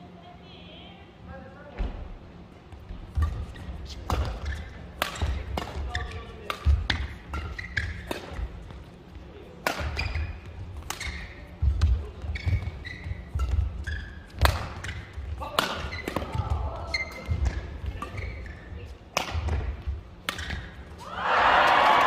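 Badminton singles rally: sharp cracks of racket strings hitting the shuttlecock, about one a second, mixed with heavy thuds of footwork on the court and short high shoe squeaks. A voice comes in near the end as the rally finishes.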